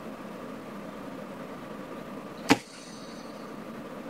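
A single sharp click or snap about two and a half seconds in, with a brief high ring after it, over steady room hiss.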